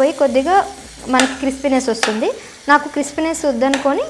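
A metal spatula stirring and scraping in a kadai. It makes about five squeaky, rising scrapes with sharp clicks against the pan. A faint frying sizzle runs underneath.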